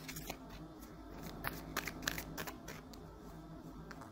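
A deck of tarot cards being shuffled by hand to draw a card: quick, irregular soft clicks and flicks of the cards over the first three seconds, quieter near the end.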